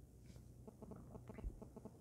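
Faint ticking of an Omega Speedmaster's automatic co-axial chronograph movement, a quick even beat of about eight ticks a second. A soft handling thump comes about halfway through.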